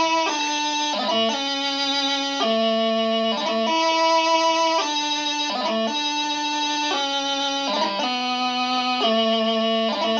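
Practice chanter playing the doubling of a piobaireachd variation: a single reedy melody line with no drones. It moves between held notes about once a second, each change ornamented with quick gracenote flourishes.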